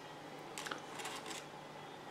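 Faint handling sounds: a few soft rustles and light taps as a fabric vacuum cleaner bag with a plastic collar is lifted off a digital kitchen scale.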